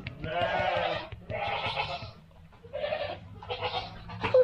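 A goat bleating four times: a long bleat, a second just after, then two shorter ones.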